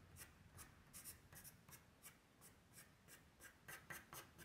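Very faint scratching of a graphite pencil on paper, flicking short strokes for grass at about three strokes a second.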